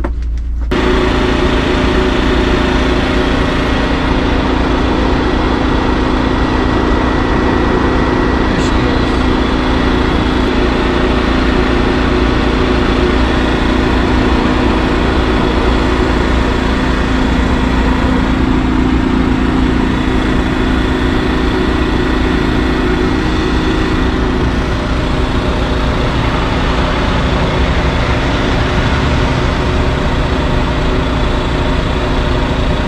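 A steady mechanical drone of running machinery: a low rumble with a constant hum, beginning abruptly about a second in and easing slightly about 24 seconds in.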